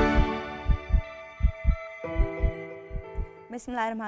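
The tail of a theme tune: sustained chords over a heartbeat sound effect, paired low thumps repeating about every 0.7 s, as the music fades. A woman's voice begins near the end.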